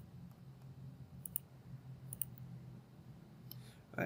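Two faint computer-mouse clicks about a second apart, over a low steady hum.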